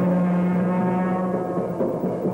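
A long, steady horn-like note held for about a second and a half, mixed with soundtrack music.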